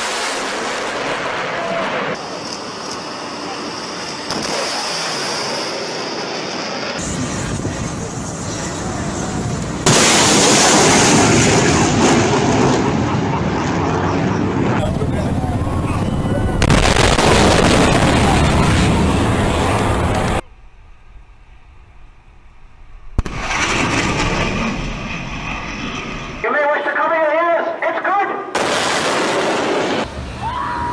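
Fighter jets making low, fast passes: loud jet engine noise in several separate stretches, cut abruptly from one to the next, with a short quieter gap about two-thirds of the way through. People's voices come in near the end.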